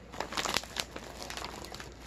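Plastic snack bag of bite-size strawberry wafers crinkling as it is handled, with a cluster of irregular crackles in the first second and quieter rustling after.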